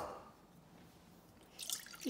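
A steel saucepan's ring dies away after it is set down. About a second and a half in, tamarind pulp starts pouring from a glass measuring jug into the empty steel pan with a short splash.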